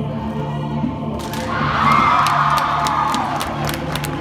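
Recorded show music playing over gym speakers, with the audience breaking into cheering about a second in, loudest around the middle, over sharp claps or clicks.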